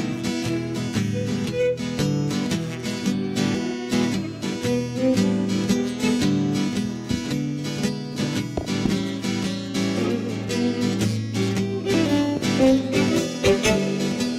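Background music led by a strummed acoustic guitar, playing steadily.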